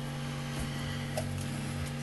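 A steady low electrical hum, with a few faint clicks and light knocks of handling over it.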